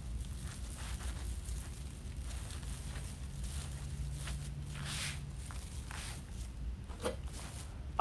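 Soft, intermittent rustling of plastic deco mesh as ruffles are scrunched and tucked into a wreath, over a low steady hum.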